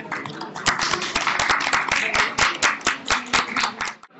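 A small audience applauding, with loud close hand claps at about five a second over the general clapping. The applause cuts off abruptly at the end.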